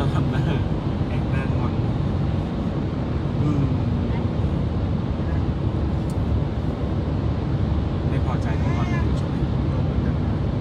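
Car driving through a road tunnel, heard from inside the cabin: steady low road and engine noise with no change in pace.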